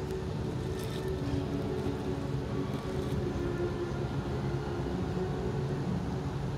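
Steady low rumble of distant city ambience, with faint held tones above it.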